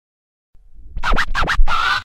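Short intro music sting with record scratches. A low rumble builds about half a second in, then three quick scratch sweeps and a longer held scratch sound that cuts off suddenly at the end.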